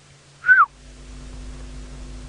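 Black-headed oriole calling once about half a second in: a short liquid whistle that rises slightly, then slides down. A steady low hum begins just after it.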